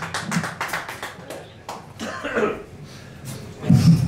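Scattered hand clapping from a small pub crowd between songs, with a brief voice a little after two seconds in. A louder sound rises near the end as the band comes back in.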